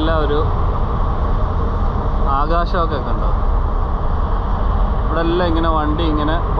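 A moving car ferry, its steady low rumble going on without a break. Short bursts of people talking come over it three times.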